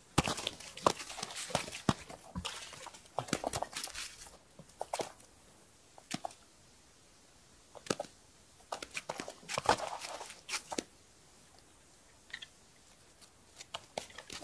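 A freshly landed perch flapping on packed snow beside the ice hole, followed by scattered light clicks, knocks and scuffs of handling the fish and the ice rod.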